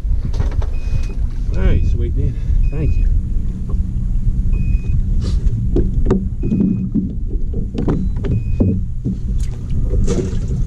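Low, fluctuating rumble of wind buffeting the camera microphone on an open boat. Faint muffled voices come and go, and a short high beep repeats about every two seconds.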